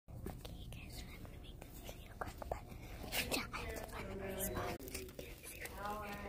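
A young girl whispering and murmuring close to the microphone, with scattered small clicks, breaking into a few soft voiced words near the end.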